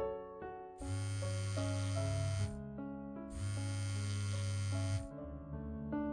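Sony Ericsson Walkman mobile phone vibrating on a wooden tabletop for an incoming call: two long buzzes of under two seconds each, with a short gap between. Soft piano music plays throughout.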